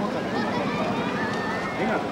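Crowd chatter: many voices talking and calling at once, close by and overlapping, with no single voice standing out.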